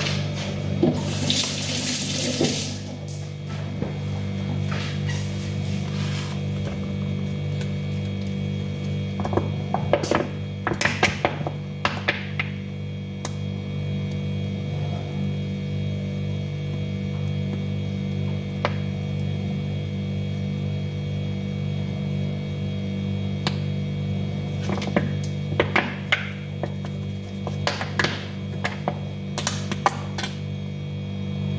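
A steady low hum throughout, with scattered soft clicks and short spurts from a plastic squeeze bottle of mayonnaise being squeezed out in thin streams. The spurts are most frequent about ten seconds in and again near the end.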